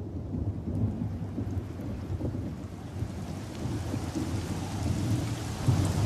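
Storm ambience: a low, rolling rumble of distant thunder with a faint hiss above it, growing louder near the end.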